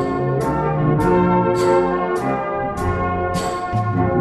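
Brass band playing a slow piece in held, full chords, with a light percussion tick on each beat, a little under two beats a second.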